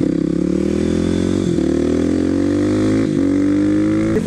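Kawasaki KLX supermoto's single-cylinder engine accelerating away from a stop: the revs rise, drop at an upshift about one and a half seconds in, rise again, drop at a second upshift about three seconds in, then hold nearly steady at cruising speed.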